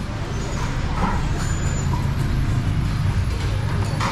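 Steady low rumble of street traffic, with passing vehicle engines, mixed with faint background voices.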